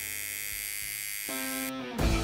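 Steady electric buzz of a tattoo machine working, which cuts off abruptly near the end, over soft background music with held chords.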